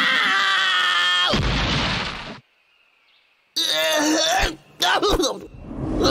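Cartoon sound track: a man's long cry falling in pitch, cut off about a second in by a rumbling crash as he drops into the ground. About a second of dead silence follows, then a wavering groan and a couple of small knocks.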